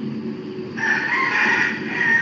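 A rooster crowing once in the background: a drawn-out call starting a little under a second in and lasting about a second and a half, over a steady low hum.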